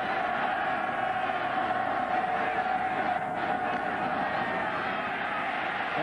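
Stadium crowd noise: a dense, steady din of many voices, with a faint steady tone running through it.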